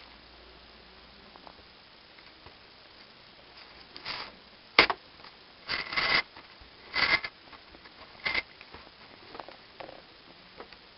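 X-Acto knife cutting through corrugated cardboard: about five short noisy strokes, starting about four seconds in, one of them a sharp click.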